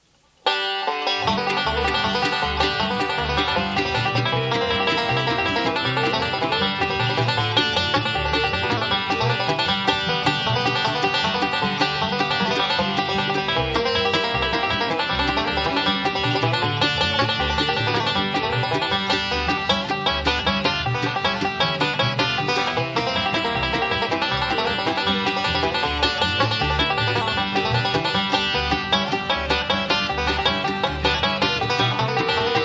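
A bluegrass band starts an instrumental about half a second in, with a five-string banjo picking the lead over rhythm guitar, mandolin and bass.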